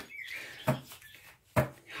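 An index card being laid down and handled on a table, with two short taps, the first under a second in and the second near the end. A faint high chirp fades out in the first half-second.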